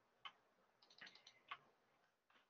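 Faint keystrokes on a computer keyboard: a single tap, a quick run of taps about a second in, then one more tap.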